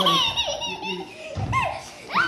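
Children laughing and squealing in high-pitched giggles during rough play, with a girl being pinned down and tickled.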